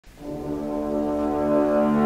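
Film score: low brass holding one sustained chord that swells up from silence at the start.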